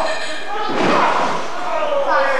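A heavy thud a little under a second in, a wrestler's body hitting the canvas of a wrestling ring, with voices shouting in a large hall.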